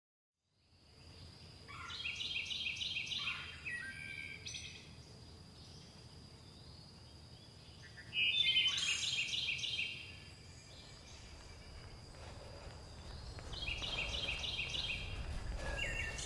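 A songbird singing three short phrases of rapid repeated high notes, spaced several seconds apart, over a low steady outdoor rumble. The sound fades in from silence in the first second.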